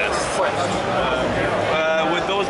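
People talking in a crowded exhibition hall, with voices overlapping and a drawn-out, wavering voice near the end.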